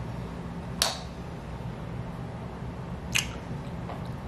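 Two short, wet lip smacks, about two and a half seconds apart, from kissing and tasting the flavored chapstick, over a low steady room hum.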